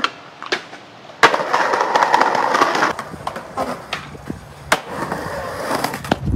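Skateboard popped, then a hard impact about a second in as it lands on a steel stair handrail, followed by a grinding scrape along the rail for about a second and a half. After that come wheels rolling and a few more sharp board clacks.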